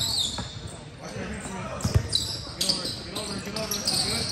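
A basketball thudding on a hardwood-style gym court, with the loudest bounce about two seconds in, and sneakers squeaking in short high chirps as players move. Voices talk and call out in the background, echoing in the large gym.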